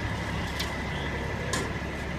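Diesel engines of heavy-duty tow trucks running steadily at idle, a low drone, with two short sharp ticks about a second apart.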